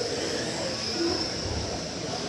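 Electric 1/12-scale GT12 radio-controlled race cars running laps on a carpet track, a steady high whine of motors and tyres.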